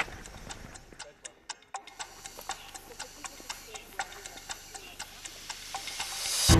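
A brief sharp click right at the start, then after a short lull a quiet, regular ticking, about three ticks a second, from about two seconds in.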